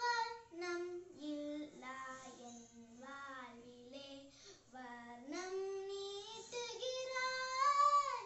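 A young girl singing solo without accompaniment, holding and bending notes, then climbing to a long held high note near the end.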